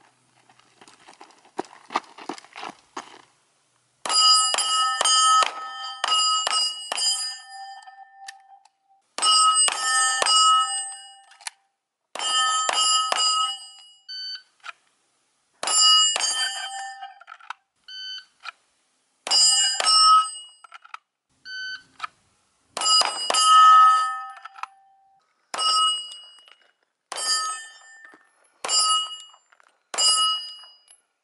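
Pistol fire at a rack of 10-inch AR500 steel plates. The shots come in about nine quick strings with short pauses between them, and each hit sets the plates ringing with a bell-like clang.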